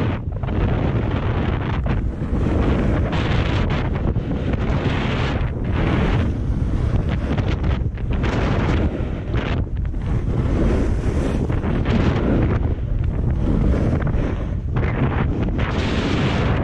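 Wind buffeting the microphone of a camera moving fast downhill, over the hiss of edges carving packed snow. The hiss swells and fades in surges a second or two apart as the rider turns.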